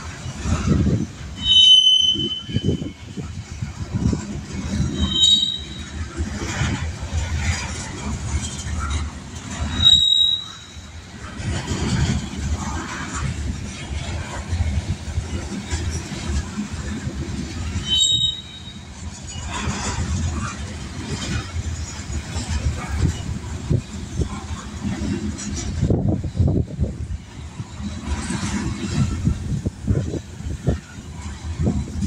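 Freight train of covered hopper cars rolling past at close range: a steady rumble and clatter of steel wheels on the rails, with brief high-pitched wheel squeals four times.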